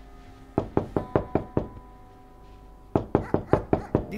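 Rapid knocking on a door in two bursts of about six quick raps each, one about half a second in and one near the end: urgent knocking.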